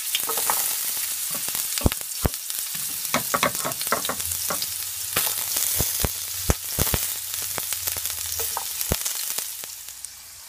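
Ginger slices and garlic cloves sizzling in hot cooking oil in a pot, a steady hiss, with several sharp taps through the middle as the garlic cloves land in the pot.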